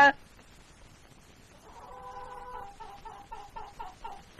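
Faint bird calls starting about halfway through: one held call, then a run of short, quick calls.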